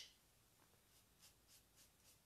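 Near silence, with a few faint, short swishes of a small applicator rubbing metallic paint onto a painted wooden drawer front.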